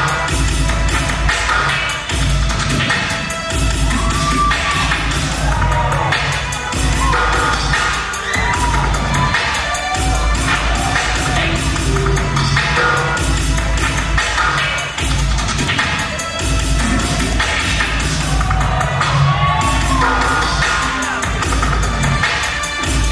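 Loud hip-hop dance music with a heavy, regular bass beat, played over a venue sound system, with an audience cheering and whooping over it.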